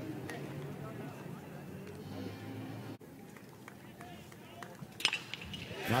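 Faint ballpark crowd murmur with distant voices, cut off sharply about halfway through. A single sharp crack about five seconds in: the bat meeting the ball.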